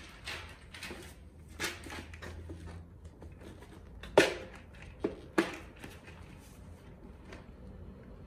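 A hard plastic trim-clip assortment case being handled and snapped open: a few sharp plastic clicks and knocks, the loudest about halfway through, then two more close together a second later.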